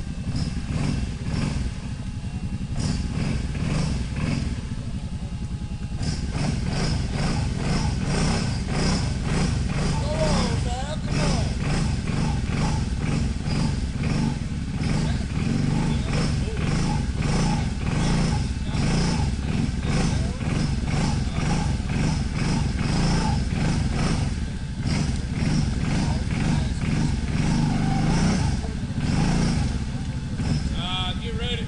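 Lifted Suzuki ATV's engine running hard under throttle, half-submerged in a deep mud hole, with the revs surging up and down. It gets louder and busier about six seconds in.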